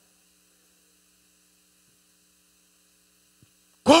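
Faint, steady electrical mains hum with no other sound, broken only by a tiny click about three and a half seconds in. A man's voice starts right at the very end.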